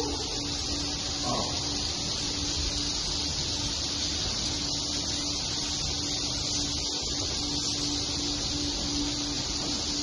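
Dense, steady high-pitched twittering of a large flock of swiftlets flying inside a swiftlet house, under a low steady hum that drops out now and then.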